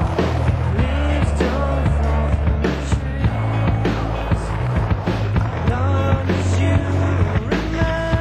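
Skateboard sounds (wheels rolling on concrete, tail pops and landings) over a music soundtrack with a steady bass line, drum hits and sliding pitched notes.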